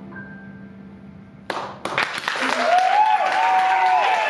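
The last chord of the song's accompaniment fades away. About one and a half seconds in, an audience starts applauding, and one long cheering voice is held above the clapping.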